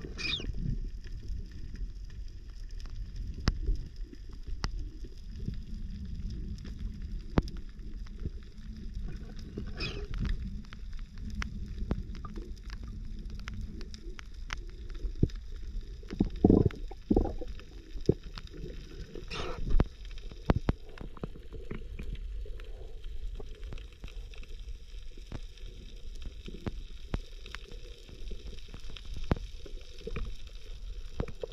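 Underwater ambience heard through a submerged camera: a steady low rumble of moving water with scattered crackling clicks throughout, and a few short squeaky sweeps.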